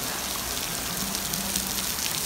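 Steady rain falling on a swimming pool and its paved deck: an even hiss made of many small drop impacts.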